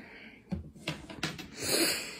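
A person drawing an audible breath that swells over about half a second near the end, after a few faint clicks.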